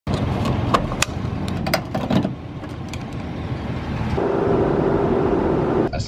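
A few sharp clicks and knocks as a pickup's diesel fuel cap is handled, over a rumble. About four seconds in, the steady road drone of the truck driving on the highway, heard inside the cab, with a steady hum.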